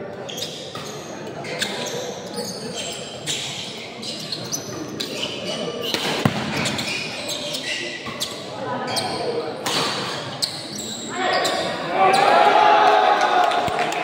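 Badminton doubles rally: racquets hitting the shuttlecock again and again in short, sharp, irregular smacks over steady crowd chatter in a reverberant hall. A bit past eleven seconds in, the crowd's voices rise loudly as the rally ends.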